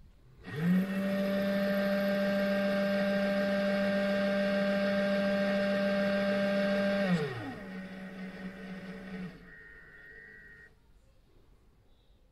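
RCBS ChargeMaster 1500 powder dispenser's motor spinning its dispensing tube to throw a powder charge: it spins up about half a second in, runs fast at a steady pitch for about six seconds, then slows to a lower hum for the trickle to the final weight and stops about nine seconds in.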